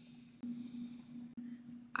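Quiet room tone with a steady low hum that gets a little louder about half a second in, and a faint click near the middle.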